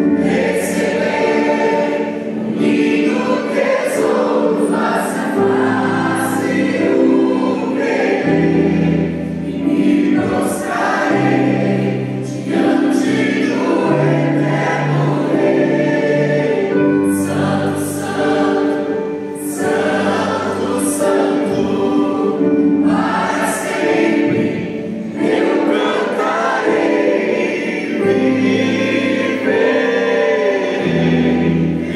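A church choir and a male lead singer singing a Portuguese worship hymn live, over electric keyboard accompaniment whose sustained bass notes change every couple of seconds.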